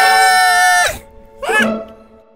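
Cartoon characters' long, steady scream of fright over background music, cutting off about a second in, followed by a short rising cry.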